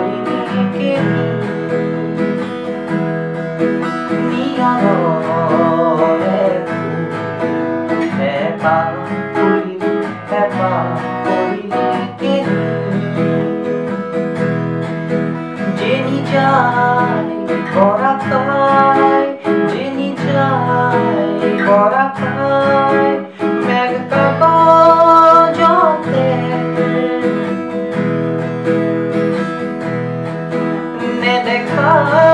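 Acoustic guitar strummed through a chord progression in E major (E, A sus2, B major, C sharp minor), with a man singing the melody over it in phrases.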